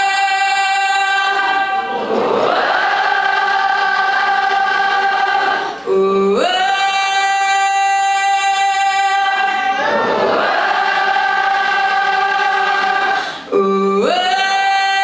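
A female singer belting long, high sustained notes into a microphone without words. Each phrase holds a note for a few seconds and slides up into another. The voice breaks off briefly twice, around six seconds in and near the end, before the next phrase.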